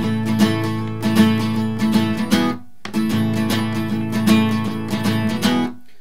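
Steel-string acoustic guitar, capoed at the second fret, strummed with a pick in a swung up-down pattern. Two strummed phrases with a brief break just before halfway, each ending on a ringing chord.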